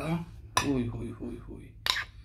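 Metal spoon working in a ceramic serving dish of yogurt, with one sharp clink of the spoon against the dish near the end.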